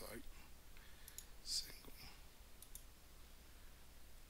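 A few faint computer mouse clicks: a pair about a second in and another pair near three seconds.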